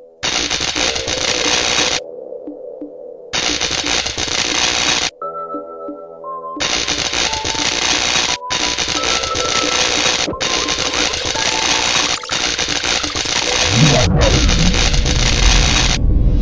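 Electronic background music with a repeating synth figure, overlaid by loud bursts of electric crackle, a sound effect for magic lightning. The crackle switches on and off abruptly, twice briefly and then for most of the rest. Near the end a low sweep rises and falls.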